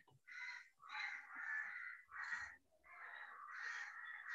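A bird calling repeatedly: a run of about five harsh calls, each roughly half a second long, with short gaps between them.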